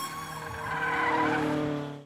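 Logo sting: sustained music with a tyre-skid sound effect squealing over it, cutting off abruptly at the end.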